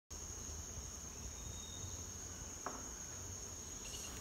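Faint, steady high-pitched insect chorus, with a low rumble beneath and a single click about two and a half seconds in.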